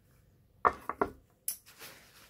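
Small crystal stones clicking and knocking as they are handled: a few sharp, light knocks starting about two-thirds of a second in, the last near one and a half seconds.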